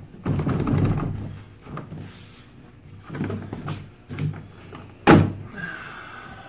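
A plastic track adapter being forced along a kayak's accessory track, scraping and catching on the raised round-headed screws that hold the track down, with scattered knocks and one sharp, loud thunk about five seconds in.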